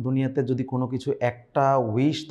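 A man speaking in continuous narration.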